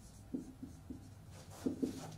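Marker pen writing on a whiteboard: a quick, irregular series of short strokes and taps as symbols are drawn.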